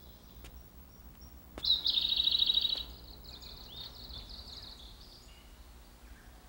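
A songbird singing: a loud, rapid, high trill about a second and a half in, lasting about a second, followed by fainter, shorter chirps.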